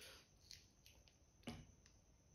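Faint crinkles and a few sharp clicks from a small plastic sauce sachet being torn open and handled, the sharpest click about one and a half seconds in.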